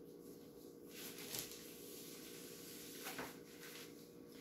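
Quiet room tone with a few faint knocks and rustles, about a second in and again about three seconds in.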